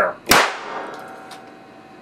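A single sharp bang about a third of a second in as a 6400 V, 75 µF capacitor bank discharges into a banana through wire electrodes, blowing banana mush out of it. The bang rings on and dies away over about a second.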